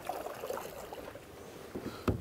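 Faint water sounds of a kayak paddle blade sweeping through calm lake water during a reverse sweep stroke, with small splashes and drips.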